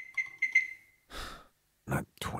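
Microwave keypad beeping four times in quick succession as a cooking time of 20:00 is keyed in, each beep a short high tone, followed a little after a second in by a short breathy hiss.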